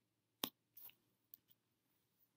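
A computer mouse clicking: one sharp click about half a second in, a brief faint scratch, then two lighter clicks, with near silence between.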